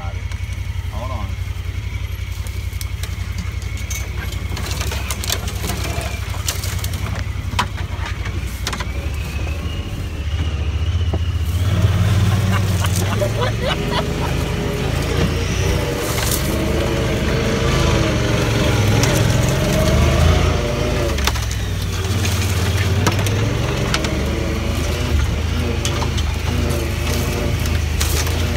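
Honda Pioneer 1000-5 side-by-side's parallel-twin engine running as the vehicle moves slowly over rough ground, with scattered short clicks and knocks. About twelve seconds in the engine gets louder and its pitch rises and falls as the throttle is worked, settling back somewhat near the end.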